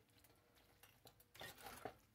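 Near silence, with a few faint, soft scrapes and squishes in the second half from a plastic spatula stirring creamy pasta in a skillet.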